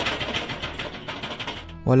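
Scraping sound effect of a rod dragged along a metal container wall: a rapid, rasping rattle that stops just before the narration resumes.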